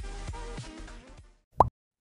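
A short snippet of music with a steady beat plays and stops about a second and a half in. It is followed by a single brief, loud sound effect just before the next announcement.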